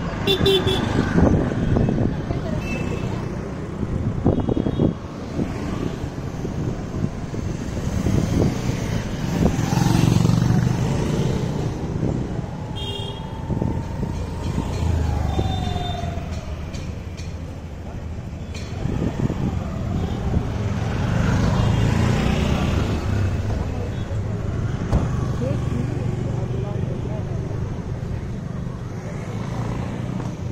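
Busy street traffic: auto-rickshaw, scooter and car engines running, with short horn toots near the start and again around the middle. Voices of passers-by and a laugh are heard over it.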